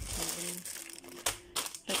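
A plastic carrier bag and a foil snack packet crinkling as a hand pulls the packet out of the bag, with a few sharp rustles in the second half.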